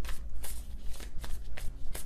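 A deck of tarot cards being shuffled by hand: a quick, irregular run of papery flicks and slaps. The reader is shuffling to draw a clarifying card.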